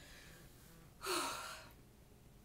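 A woman's short, loud breath about a second in, fading over about half a second.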